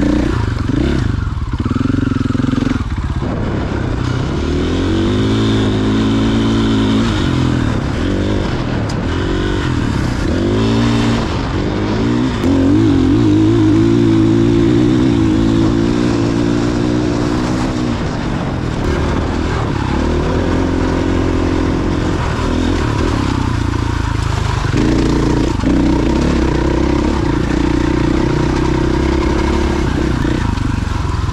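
Dirt bike engine under way on a rough trail, its pitch repeatedly climbing and dropping as the throttle is worked, with a steady high run in the middle and rattles from the bike over the rocks.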